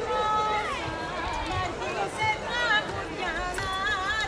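A group of voices singing a Greek folk dance song together, with held notes that slide up and down in pitch.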